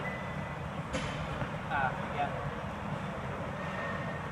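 Background noise of a large gym: a steady low rumble with faint, indistinct distant voices, a thin high tone near the start and a single click about a second in.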